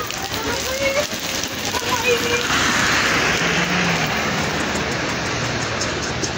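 Heavy rain falling on flooded pavement: a steady hiss that swells louder for a couple of seconds in the middle.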